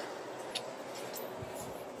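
Low steady room hiss in a small garage, with a few faint clicks of the camera being handled as it is turned.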